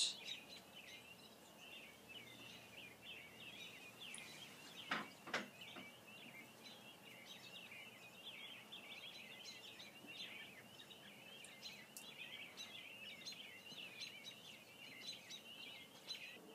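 Faint, continuous twittering of small birds: many quick high chirps. Two soft knocks come about five seconds in.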